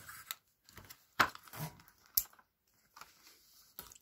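Faint handling noise: a few scattered clicks and rustles as a breathing-machine face mask is picked up and moved about, with one sharp click a little past two seconds in.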